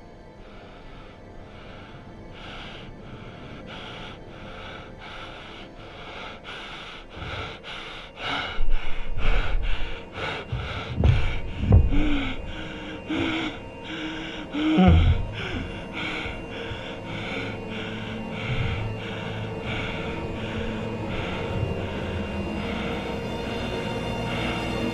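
Tense film score built on a steady pulse that quickens to about three beats a second, then eases. In the middle, the loudest stretch, a man gasps and breathes hard.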